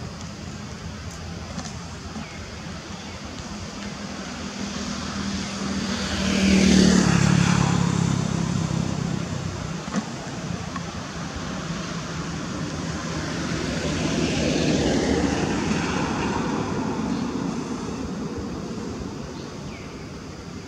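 Two motor vehicles pass by one after the other, each growing louder and then fading; the first, about seven seconds in, is the louder, its engine note dropping as it goes by, and the second passes near the three-quarter mark.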